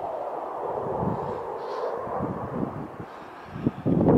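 A fighter jet passing high overhead at a distance: a steady rushing engine noise that eases off near the end.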